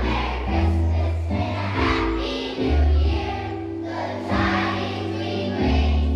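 Large children's choir singing together over instrumental accompaniment, with a low bass line that shifts to a new note every second or so.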